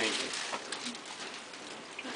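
Faint, brief low voice sounds over quiet background noise, after a spoken phrase ends at the very start.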